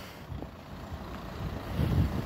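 Low rumble of road traffic, swelling a little near the end as a vehicle goes by.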